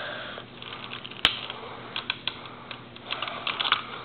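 Plastic Lego pieces clicking and tapping as a hand handles a toy figure on a hard floor: scattered light clicks, one sharp click about a second in, and a cluster of small clicks near the end.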